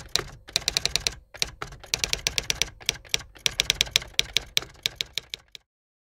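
Typewriter sound effect: keys clacking in quick runs of sharp clicks with short pauses between them, stopping abruptly near the end.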